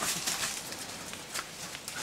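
Animals moving over dry leaf litter and dirt: faint rustling with a few soft, scattered knocks of feet.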